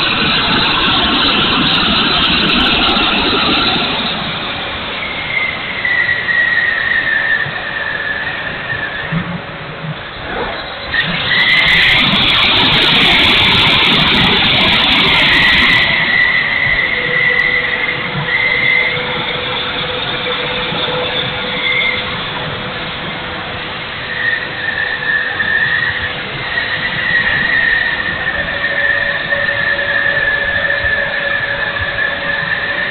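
The 70 mm electric ducted fan of an E-flite F-16 model jet whining in flight, heard from a camera on the airframe. The fan's pitch dips and rises with the throttle, and it is loudest from about eleven to sixteen seconds in.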